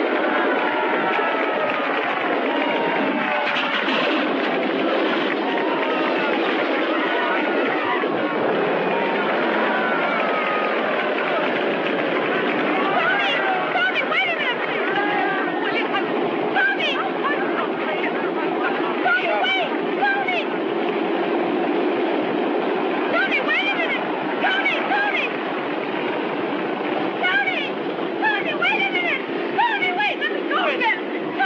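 A crowd of many voices calling out and cheering over a steady drone from an aeroplane engine. The crowd's calls grow thicker and more excited about halfway through.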